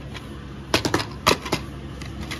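Plastic DVD case being handled and snapped open: a quick run of sharp clicks, starting about three-quarters of a second in and lasting under a second.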